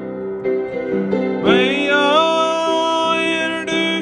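Gospel song with piano accompaniment. About a second and a half in, a man's singing voice slides up into one long held note over the piano.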